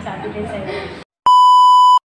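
Voices stop dead about a second in, and after a short gap of dead silence comes a loud, perfectly steady test-tone beep of the kind played with TV colour bars, which cuts off suddenly.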